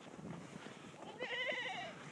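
A goat bleating once: a short, wavering call starting a little past halfway through.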